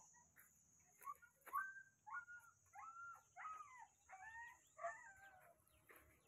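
Faint, distant animal calls: a run of about eight short pitched calls, roughly two a second, over a faint steady high buzz.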